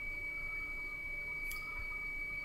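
Quiet room tone through a desk microphone: a low steady hiss with a faint, steady high-pitched whine, and one faint click about a second and a half in.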